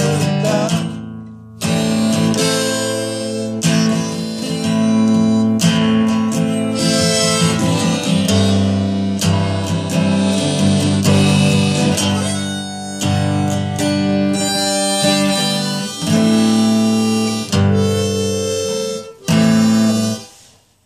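An instrumental passage of a folk or country song with no singing: acoustic guitar strumming under a harmonica lead, with a few brief breaks in the second half.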